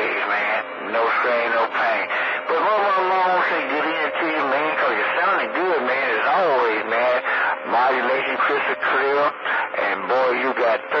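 Voices coming over a CB radio receiving long-distance skip, with a faint steady tone under the talk through the middle.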